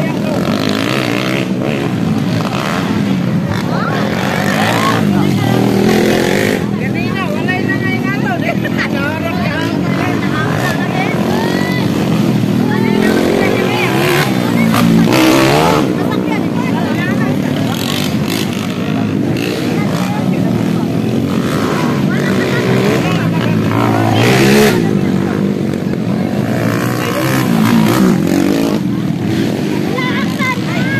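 Motocross motorcycles racing on a dirt track, their engines revving up and down as they pass, loudest about halfway through and again a few seconds before the end, under a steady background of voices.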